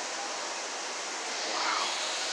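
Steady rushing background noise of a large store interior.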